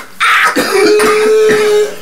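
A man coughing hard in one drawn-out, rasping fit of about a second and a half, with a steady wheezing tone held through most of it.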